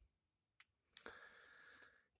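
Near silence in a pause, broken by a single short click about a second in, with a fainter tick just before it.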